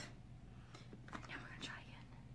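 A woman whispering faintly under her breath, with a soft click or two.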